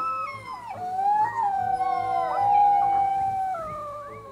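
Wolf pups howling: several thin voices overlapping in long, wavering howls that fade near the end.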